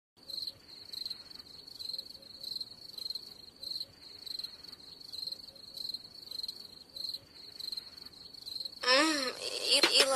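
Cricket chirping steadily, a high, thin chirp repeating about twice a second. Near the end a louder warbling tone that wavers up and down in pitch swells in.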